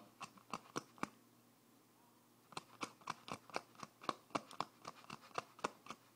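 Handling noise on the camera's microphone: sharp clicks and scratches, a few in the first second, then after a short pause a quicker irregular run of about four a second.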